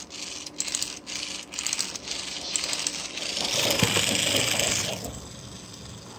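Clockwork mechanism of a tin wind-up waltzing-lady toy: metallic rattling in short bursts about twice a second, then a louder steady whirr for about a second and a half before it drops back.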